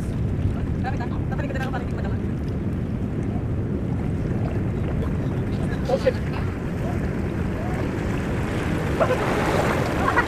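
Wind buffeting the microphone over steady sea surf. Near the end, a wave surges over the coral rocks into the tidal pool with a rising rush of churning water.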